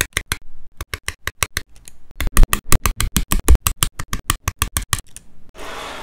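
Hobby nippers snipping plastic model-kit parts off a sprue in a rapid run of sharp clicks, about six or seven a second, loudest in the middle. Near the end, a short rustle of loose plastic parts being pushed across the desk by hand.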